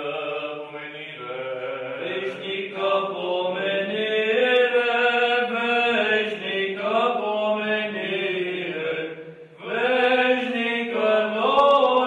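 Voices chanting an Eastern Orthodox memorial-service hymn in long, slowly moving held notes. The chant breaks off briefly about nine and a half seconds in, then resumes.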